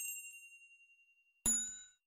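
Sound-effect chimes from an animated subscribe and notification-bell end screen. A single high ding fades over about a second and a half, then a brighter bell chime with several tones rings about a second and a half in and fades out.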